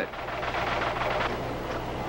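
The GE 210 computer's high-speed line printer running, a fast dense clatter as the printed paper feeds through, over a low steady hum.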